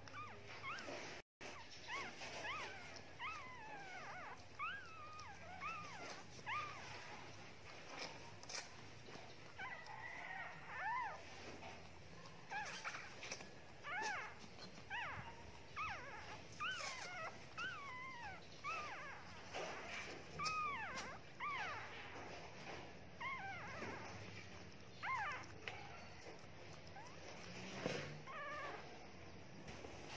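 Newborn Shih Tzu puppies squeaking and crying in short, high-pitched rising-and-falling squeals, coming in clusters throughout.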